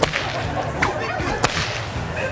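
A long whip being cracked: three sharp cracks within about a second and a half, the first right at the start.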